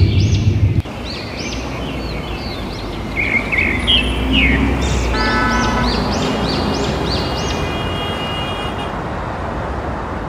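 Steady low hum of city street traffic, with a louder engine rumble that cuts off under a second in. Short, high chirps repeat over the hum throughout.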